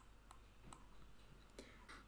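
Near silence: faint room tone with a few faint, sharp clicks at irregular intervals.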